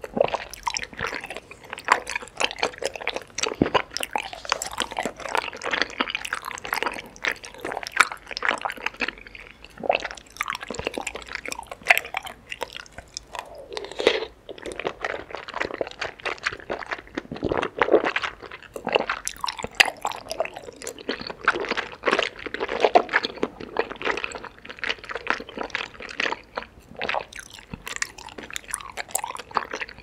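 Close-miked mouth sounds of someone chewing soft, sticky food: continuous irregular wet smacks and clicks.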